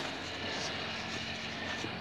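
Steady, even whir of an automatic coal-fired stove's running machinery, with a faint low hum underneath.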